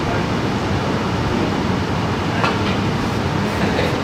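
Steady low rumble and hiss of room background noise, with one faint click about two and a half seconds in.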